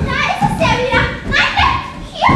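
Loud, high-pitched voices talking or calling out, several overlapping, in a large hall.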